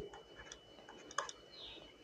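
Faint, scattered clicks from writing on a digital whiteboard, the sharpest about a second in, over low room hiss.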